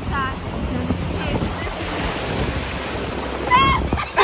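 Ocean surf breaking and washing in over shallow water, foaming around a person lying in it, with wind on the microphone. A short voice sound comes at the start and again near the end.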